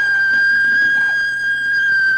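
Amplifier feedback: one high, whistle-like tone held steady on a single pitch.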